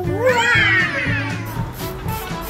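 A cat's meow: one long call that rises and then falls away, over background music.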